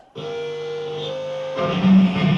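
Amplified electric guitar: a held, ringing chord, then a louder, deeper chord about one and a half seconds in.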